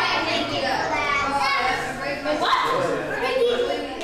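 Several children's voices calling out, high-pitched and overlapping, with no clear words.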